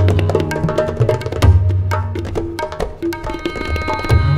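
Indian classical fusion ensemble playing, with tabla strokes coming fast over sustained melodic notes and a low bass line. A new held note with a bright stack of overtones comes in near the end.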